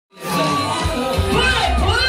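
Live concert crowd cheering and shouting over loud music through a PA system; a heavy bass beat comes in just under a second in, with a voice on the microphone over it.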